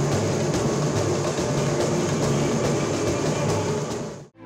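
Samba music with busy, dense percussion playing steadily.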